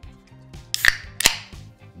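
A cold drink can being cracked open by its ring-pull: two sharp cracks about half a second apart, a little under a second in, each with a short fizzing hiss.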